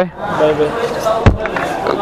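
A single sharp thump just past the middle, between quiet voices.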